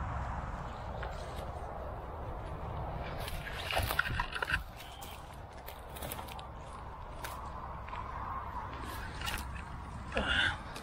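Rustling of dry bankside reeds and grass, with scattered clicks and knocks as a landing net is handled, over a steady low rumble. A louder burst of rustling comes about four seconds in.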